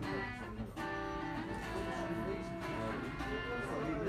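Guitar music: a guitar plays held notes and chords, a new one struck about once a second, with voices underneath.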